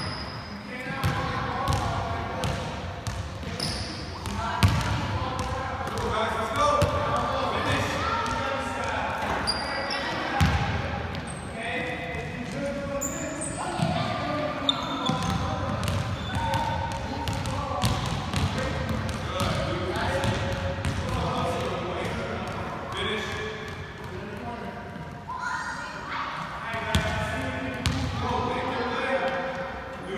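Several basketballs bouncing irregularly on a hardwood gym floor, with children's voices and chatter echoing in the large hall.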